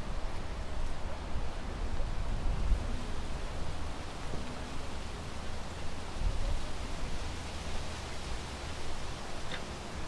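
Steady outdoor ambient noise: an even rushing sound with a low rumble underneath, and a faint click near the end.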